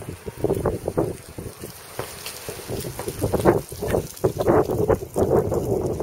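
Wind buffeting the camera microphone: an irregular low rumble that surges and drops in gusts, strongest around the middle and through the last second and a half.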